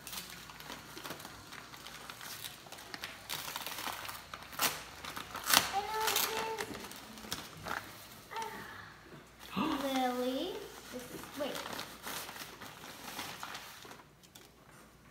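Plastic mailer bag crinkling and rustling as it is handled and pulled open. Short vocal sounds come about halfway through and again about ten seconds in.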